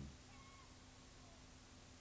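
Near silence: a faint steady hum, with a few very faint short gliding squeaks in the first second.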